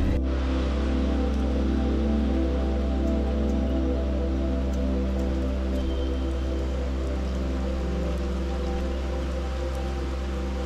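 Background music: a calm ambient track of long-held, sustained chords over a steady low bass, easing slightly down in level.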